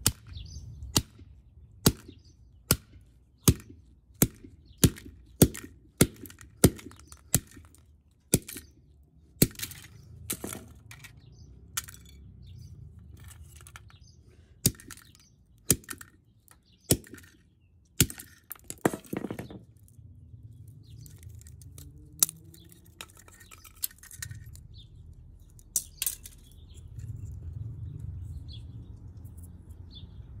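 Hammer repeatedly striking the plastic housings and electronics of an X10 wireless camera kit on concrete, cracking and breaking them. The blows come about once a second for the first ten seconds, then more spaced out with a quick flurry partway through, and stop a few seconds before the end.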